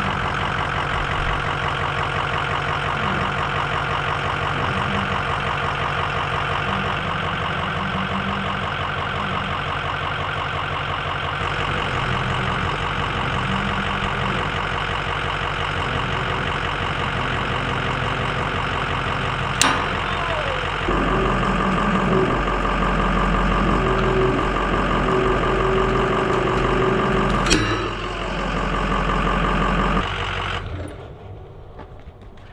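Pickup truck engine running steadily, then deeper and a little louder a little past two-thirds of the way through as the truck pulls against the rod. A sharp crack a little past halfway and another near the end are the fishing rod cracking under the load.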